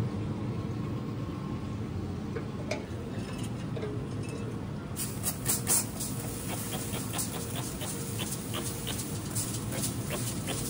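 Hand trigger spray bottle squirting mist in quick short bursts, starting about halfway through and repeating until the end. A steady low hum sits underneath.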